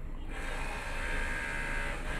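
A small motor running steadily, a buzzing hum with a faint whine that comes up about a third of a second in.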